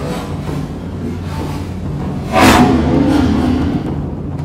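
Background music with steady low tones and one loud drum-like hit about two and a half seconds in that rings on for over a second.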